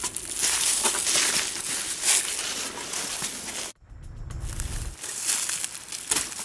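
Dry leaf litter and stiff coverall fabric rustling and crinkling as people shift and sit down on the forest floor, with many short sharp crackles. About two-thirds of the way in the sound drops out abruptly and a low rumble runs for about a second before the rustling resumes.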